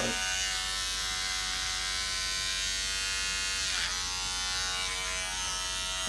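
Electric beard trimmer buzzing steadily as it clips hair at the side of the head. Its hum dips briefly in pitch about four seconds in.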